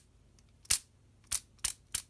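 Hard plastic clicks and knocks from a Twelfth Doctor sonic screwdriver TV remote being handled and twisted, as its collar is worked loose by hand. Four sharp, separate clicks at uneven intervals.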